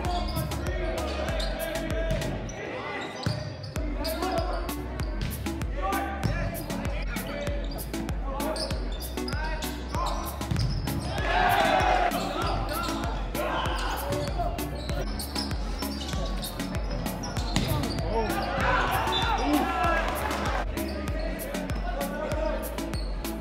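Volleyball being played in a gymnasium: repeated sharp ball strikes and players' voices calling out, over background music.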